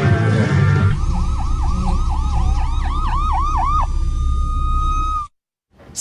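Music ends about a second in, giving way to a siren yelping, its pitch rising and falling about four times a second over a low rumble. The siren then holds one steady tone before cutting off abruptly.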